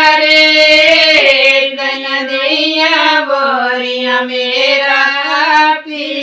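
Women singing a Himachali ghodi, a folk wedding song of the groom's side, without instruments, in long drawn-out notes that slide from pitch to pitch, with a short break for breath near the end.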